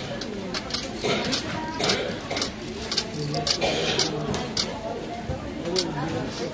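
50p coins dropped one at a time into a Coinstar coin-counting machine's tray, a quick irregular series of sharp metallic clinks, about a dozen in all.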